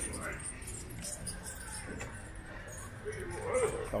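Light metallic rattling and jingling from a bicycle rolling along a street, with a faint voice near the end.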